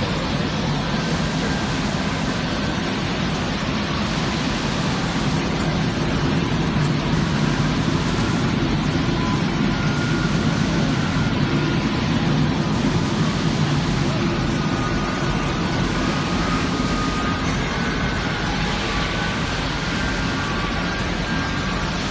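Steady, loud machinery noise of a controlled-atmosphere aluminum brazing furnace line, running evenly without strokes or rhythm.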